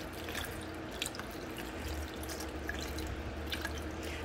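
Water poured from a glass over cucumber seeds in a fine-mesh metal strainer, trickling through into a plastic container below: a steady, quiet trickle with scattered drips as the seeds are rinsed.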